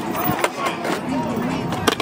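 Skateboard on a concrete skatepark: wheels rolling and a few board clacks, the loudest sharp clack near the end.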